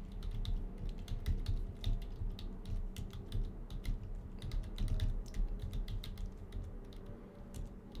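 Computer keyboard being typed on: a fast, irregular run of keystroke clicks as a terminal command is entered.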